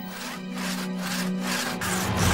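Hand saw cutting through a log, in rasping back-and-forth strokes about two a second, under background music with a steady low note.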